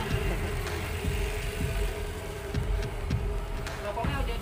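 A steady low engine rumble, like a motor vehicle idling, under a steady hum, with a few light clicks.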